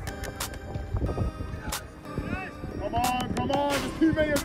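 People shouting and calling out during a football match. There are short calls about two seconds in and more near the end, with scattered knocks and thumps throughout.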